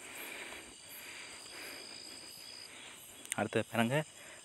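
Faint background hiss with a steady high-pitched tone or trill during a pause, then a man's voice starts speaking in Tamil about three quarters of the way through.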